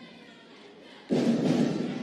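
Background music: a deep drum hit about a second in that rings out and fades, after a quieter moment.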